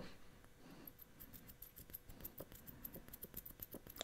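Near silence, with faint scattered light ticks and clicks that grow more frequent in the second half.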